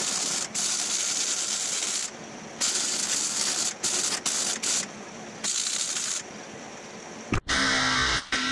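Electric arc welding a steel brace onto an English wheel frame: a crackling hiss in runs of one to two seconds with short pauses between welds. Near the end it cuts to an electric drill running.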